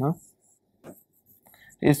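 Stylus drawing strokes on an interactive touchscreen whiteboard: faint, light scratching. A brief voice sound at the start, and speech starts again near the end.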